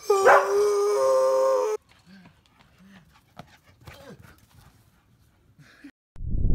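A dog howling: one long, held howl that steps up in pitch and cuts off abruptly a little under two seconds in, followed by only faint sounds.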